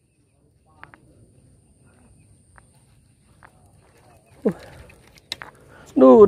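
Quiet stretch of faint scattered clicks and rustles from movement on a dry-grass bank, with a short vocal sound about four and a half seconds in, followed by a couple of sharp clicks.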